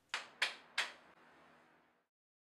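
Three sharp percussive hits about a third of a second apart, each fading out quickly.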